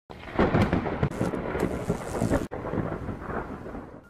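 A loud, rough rumbling noise full of sharp crackles. It breaks off abruptly about halfway through, starts again and fades out near the end.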